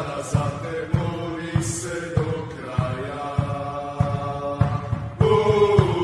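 Background music: a chanting vocal over a steady, regular beat, a little under two beats a second.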